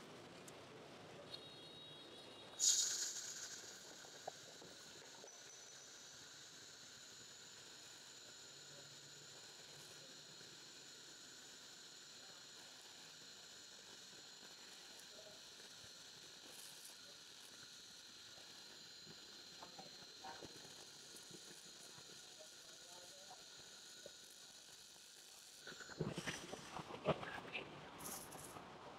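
Handheld laser gun of a Jasic LS-15000F fiber laser welder in rust-removal mode, cleaning rust off a steel bar. It starts with a sudden burst about two and a half seconds in, then holds a faint steady hiss with a high whine for some twenty seconds and stops. A few clicks and knocks follow near the end.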